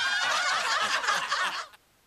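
A burst of rapid laughter at the close of the show's logo jingle, cutting off abruptly near the end.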